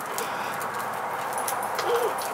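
A child's plastic tricycle rolling over a concrete driveway: a steady gritty rolling noise with a few faint clicks.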